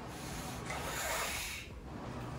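A person drawing a long breath in through the mouth while taking a drag on a cigarette, an airy hiss lasting about a second and a half that stops abruptly, over a steady low machine hum.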